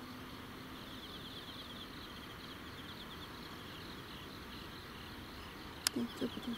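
Night insects chirping in a faint, steady pulsing trill, with a single sharp click just before the end.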